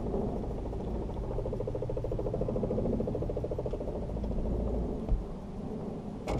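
Baitcasting reel whirring for a couple of seconds as its spool and gears turn, with an even fast ticking, then a low bump near the end.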